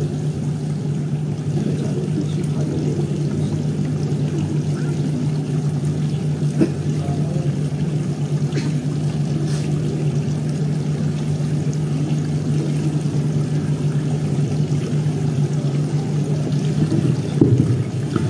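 Steady low electrical hum from the sound system under a haze of room noise, with a single faint click about six and a half seconds in.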